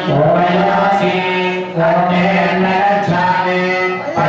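Male voices chanting Hindu mantras in a steady, near-monotone recitation, with short pauses a little under two seconds in and again about three seconds in.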